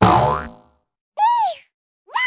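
Cartoon-style sound effects. First a sudden springy sound that drops in pitch and dies away within about half a second. About a second later comes a short, high-pitched squeak that rises and then falls.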